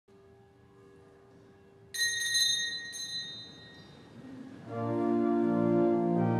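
A bell rings with a bright, high ring about two seconds in, struck again a second later, and fades. Then a church organ comes in with loud sustained chords near the end.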